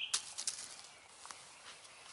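Quiet outdoor woodland ambience with a couple of brief sharp clicks or rustles in the first half-second.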